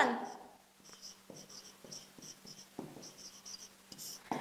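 Marker pen writing on a whiteboard: a string of short, faint, high-pitched squeaks and scrapes as a word is written and underlined.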